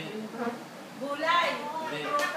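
Indistinct human voices in short snatches, loudest from about a second in.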